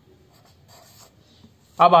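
Pen scratching on paper in a few short strokes, faint, about half a second to a second in.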